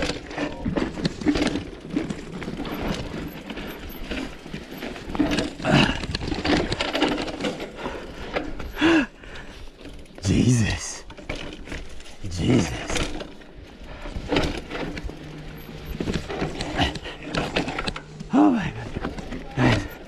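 Mountain bike clattering and rattling over a rough dirt singletrack, tyres crunching on dirt and stones, with irregular knocks from the bumps. A person gives short wordless vocal sounds every few seconds.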